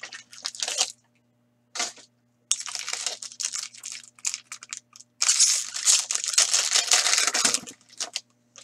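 Trading-card packaging being torn open by hand: a small card box and then a foil pack wrapper crinkling and tearing. It comes in short rustling bursts with brief pauses, and the longest, loudest crinkling comes in the second half.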